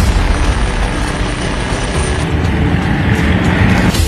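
Military helicopters flying low overhead: loud, steady engine and rotor noise.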